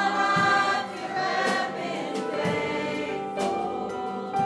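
Church choir of mixed men's and women's voices singing a gospel song, with a band of keyboard and guitars accompanying.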